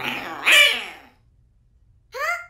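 A cartoon parrot's loud, harsh squawk that falls in pitch and fades out within about a second, followed by near quiet.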